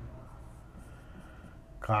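A marker pen writing on a white board, faint. A man's voice starts up near the end.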